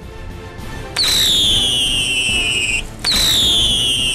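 Whistling wheel firework spinning on the ground: a hiss of sparks builds for about a second, then two loud whistles, each starting high and sliding down in pitch, with a short break between them.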